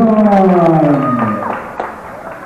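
A ring announcer's voice over a microphone, stretching out a call in one long drawn-out note that slides down in pitch and fades out about a second and a half in.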